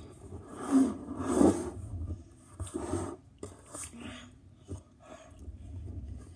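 A boy's grunts and heavy breaths, his mouth full of sour candy, strained by the sourness, in a few short bursts with quiet gaps between them; the loudest come about a second in.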